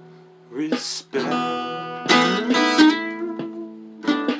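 Acoustic guitar being strummed: a few chords struck and left to ring, the loudest a little after two seconds in.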